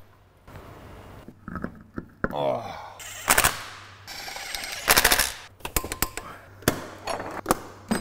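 Workshop tool noise on a car's rear brake: two short bursts of rapid metallic impacts, about three and five seconds in, followed by several single sharp knocks.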